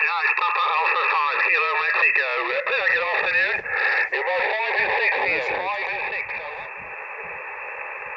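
Another amateur station's voice coming through a small HF transceiver's speaker on 40 m sideband: thin, narrow-sounding speech over a steady hiss of band noise. The voice stops about a second before the end, leaving only the hiss.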